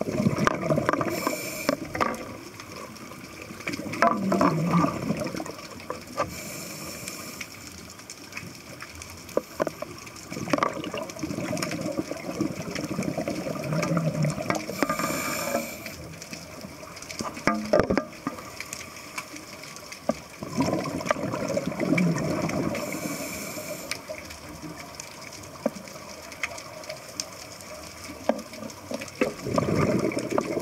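Scuba diver breathing through a regulator, heard underwater: a short hiss of inhalation about four times, each followed by a longer bubbling, gurgling rush of exhaled air.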